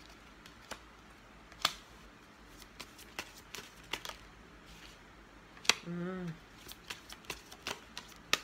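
A tarot deck being shuffled by hand, with sharp card snaps at irregular intervals, about ten in all, the loudest two near 2 s and near 6 s.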